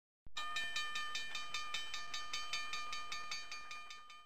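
A bell-like ringing, struck rapidly about five times a second over a steady ringing tone, fading away toward the end.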